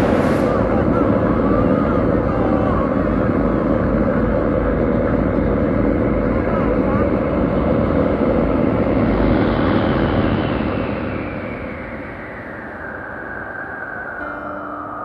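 A steady vehicle-like rumble that fades from about ten seconds in, as a whine falls in pitch toward the end.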